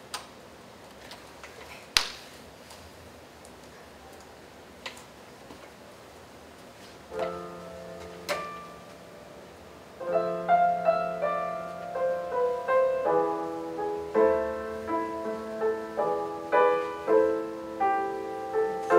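A quiet room with a few sharp clicks, then a recorded piano composition played over loudspeakers. A few notes come in about seven seconds in, and steady playing follows from about ten seconds in.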